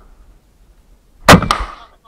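A shoulder-fired rocket-propelled grenade launcher is fired: one very loud blast about a second and a quarter in, a second sharp crack a fifth of a second later, then a short fading rumble.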